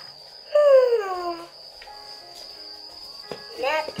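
Beagle puppy giving one high whine that falls in pitch over about a second, over a steady faint high tone. A sung voice comes in near the end as guitar music starts.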